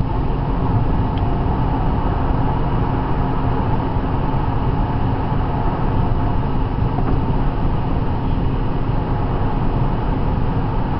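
Steady road noise inside a car's cabin at highway speed: tyre and engine drone, strongest low down, with a faint steady hum.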